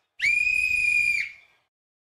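A referee's whistle blown once, a single steady high-pitched blast about a second long that dips slightly in pitch as it stops.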